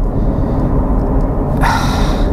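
2015 Porsche Cayman S's mid-mounted flat-six running, heard from inside the cabin as a steady low rumble. Near the end a short rush of noise.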